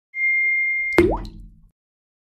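Intro sound effect: a steady high beep, then about a second in a sharp pop with a quick upward-gliding bloop and a low boom that fades out within about half a second.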